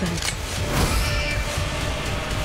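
Deep, steady low rumble with a whooshing sweep about three-quarters of a second in and a faint high held tone in the second half: the layered rumble-and-whoosh sound design of a film trailer.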